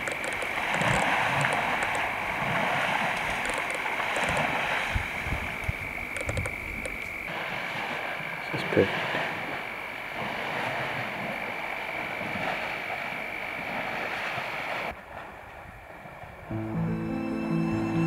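Night bush ambience: a steady high-pitched insect trill over a rustling hiss. Background music comes in near the end.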